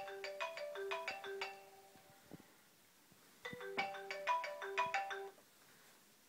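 Phone ringtone: a short electronic melody plays twice, with a pause of about two seconds between the two rings.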